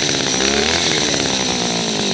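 Small two-stroke petrol hedge cutter engine running, its speed wavering up and down as the carburettor's fuel-to-air mixture screw is turned.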